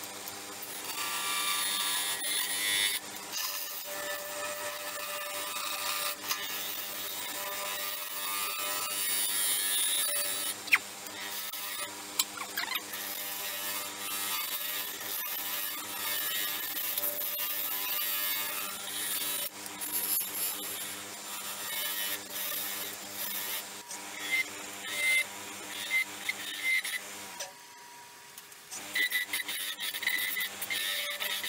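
Turning tool cutting the bottom of a spinning bowl blank of resin and stabilized dog treats on a lathe: a steady scraping, shaving hiss over the lathe's motor hum. Near the end the cuts come in short bursts, with a brief pause just before the end.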